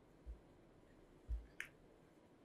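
Faint, quiet room with two short dull low thuds, the second louder, followed just after by a single small sharp click.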